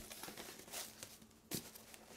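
Faint rustling and crinkling of clear packing tape and cardboard as fingers pick at the taped box, with one sharp click about one and a half seconds in.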